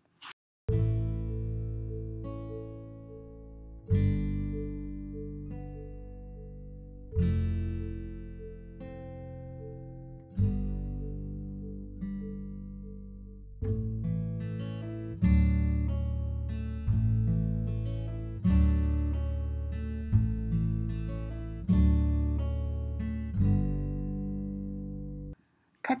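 Background music of plucked acoustic guitar. Slow chords ring out and fade about every three seconds, and the notes come quicker from about halfway through.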